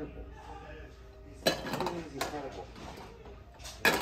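Toy kitchen pieces being handled, making several sharp clinks and clatters, the loudest near the end.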